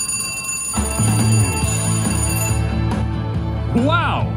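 Wheel of Fortune Gold Spin slot machine sounding its bonus-trigger alert: a sustained bell-like ringing, joined about a second in by the machine's steady low bonus music. The ringing fades out well before the end.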